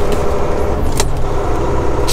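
Truck engine and road noise heard from inside the cab as the truck drives, a steady low rumble, with one sharp click about a second in.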